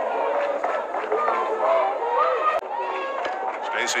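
Overlapping voices of a ballpark crowd at a softball game: steady chatter with some calls and shouts rising out of it.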